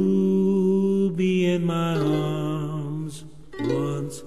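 Ukulele song with a man's voice sliding up into a long held sung note that wavers slightly, then dropping to a lower note near the end.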